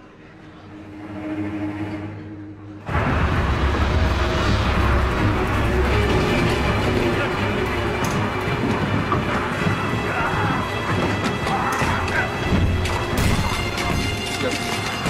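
Film action soundtrack: a low, held musical tone swells, then about three seconds in a sudden loud burst of dramatic score mixed with shouting and crashing impacts carries on to the end.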